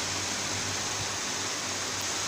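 Steady hiss of background noise with a faint low hum underneath, and no singing or music.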